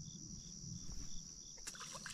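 Insects calling: a steady high-pitched trill with a pulsed chirp beneath it at about four chirps a second, the chirps fading soon in; the trill cuts off just before the end.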